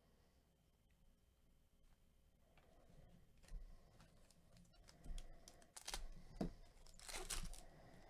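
Foil wrapper of a Panini Elite Extra Edition baseball card pack being torn open and crinkled: faint rustling that starts a couple of seconds in, then a few short, sharp crackles, the loudest near the end.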